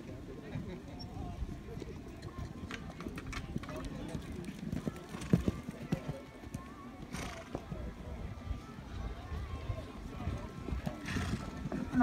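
Horse hoofbeats on a sand arena, irregular and soft, over a steady low rumble, with faint voices in the background.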